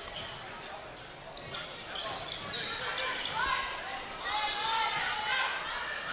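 Indoor volleyball rally in a gym: sharp ball contacts and footwork on the hardwood court, with players and spectators calling out and cheering more loudly from about two seconds in. The whole sounds reverberant in the large hall.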